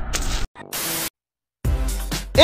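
Short bursts of static hiss broken by gaps of dead silence, as one recording is spliced to the next; near the end the music of an advert begins.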